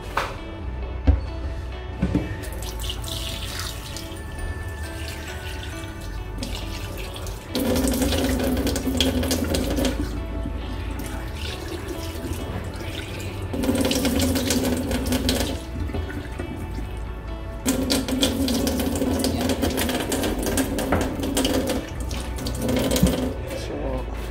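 Kitchen tap water running and splashing onto a plate of cut fish pieces in a stainless steel sink as the fish is rinsed, louder in three spells of a few seconds each.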